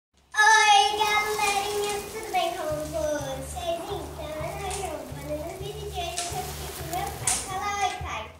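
A young girl's high voice going on almost without a break in a sing-song, rising and falling, over dominoes being shuffled by hand on a glass table, with a few faint clicks of the tiles. A low, even background beat comes in about a third of the way through.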